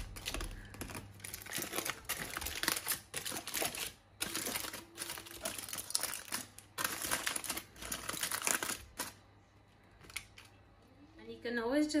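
Aluminium foil packet being torn and peeled open by hand, crinkling and crackling in irregular bursts for about nine seconds before it stops.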